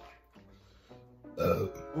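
A man's single short burp, about one and a half seconds in, over quiet background music.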